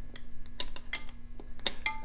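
A handful of light metallic clicks and clinks, irregularly spaced, from a 12 mm wrench working on the enricher plunger's nut at a Kawasaki KLR650's carburetor.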